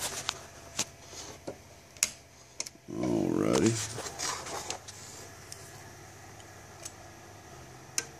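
A few sharp clicks and some light clatter, with a brief murmured vocal sound about three seconds in.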